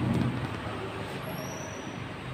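A steady low rumble, louder for a moment at the start, with a faint thin high-pitched whine through the second half.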